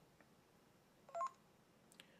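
A short electronic beep of a few tones from the HTC-made myTouch 3G Slide about a second in, the Genius button's voice-search prompt signalling that the phone is now listening for a command; otherwise near silence.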